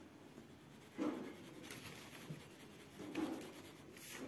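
Faint scratching of a coloured pencil on a paper workbook page as a word is shaded in. It comes in two spells of strokes, about a second in and again around three seconds.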